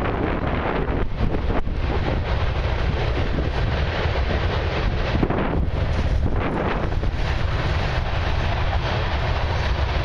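Wind buffeting the microphone: a steady low rumble throughout, with a few brief rustles about a second in and again around five to six seconds.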